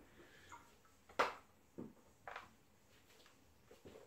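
A few faint clicks and knocks, one sharper than the rest about a second in, from handling the small plastic tap at the end of a homebrew siphon tube as it is opened to start the wine flowing.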